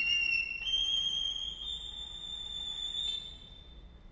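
Solo violin holding a single very high, thin note that steps up in pitch twice and then fades away, leaving a brief pause.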